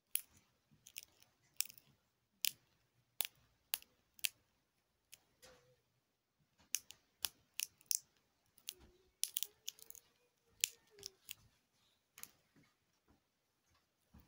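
Plastic glow sticks being bent in the hand, giving irregular sharp crackles and snaps one to three times a second as the inner glass vials crack.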